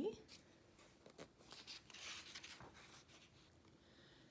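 Faint rustle of a large paper book page being turned by hand, with a couple of soft taps about a second in and a papery swish just after.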